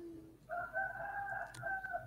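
A rooster crowing once, heard faintly over an online call microphone: one drawn-out, slightly wavering call of about a second and a half, preceded by a brief low hum.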